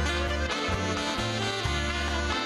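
Big band playing a Latin tune, with saxophones and brass over repeated strong bass notes.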